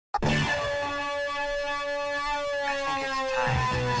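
Electronic background music: held synthesizer tones sliding slowly down in pitch, joined by a deep bass about three and a half seconds in.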